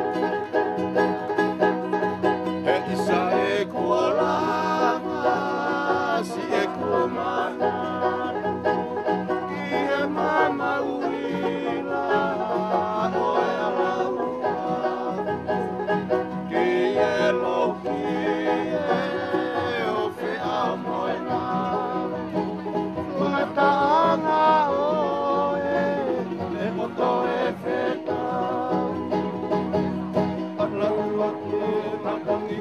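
Polynesian string band playing: a strummed banjo with acoustic guitars and small ukulele-type guitars, with men singing along.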